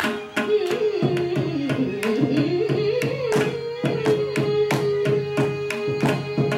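Carnatic music: a woman's voice and a violin weave an ornamented melodic line, then hold one long note from about four seconds in, over steady mridangam strokes.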